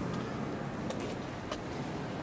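Steady low hum of street traffic, with a few faint clicks about a second in and again near the end.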